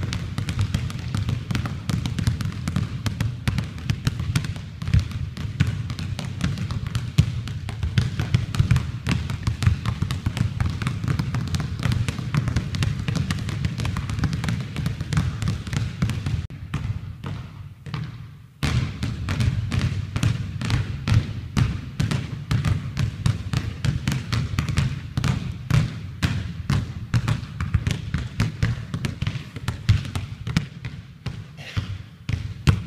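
Basketballs dribbled hard and fast on a hardwood gym floor, the bounces following one another many times a second. There is a short pause about two-thirds of the way in, then the bouncing starts again suddenly.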